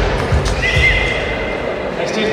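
High heels stepping across a stage, a run of low, irregular thuds over a steady background noise. A thin high tone comes in about halfway through.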